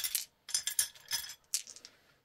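A handful of small plastic polyhedral dice clicking and clinking against one another as they are picked up and gathered in a palm, in several short clatters.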